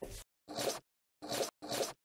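Short swish sound effects from an animated intro, four in quick succession about half a second apart, each lasting about a quarter second.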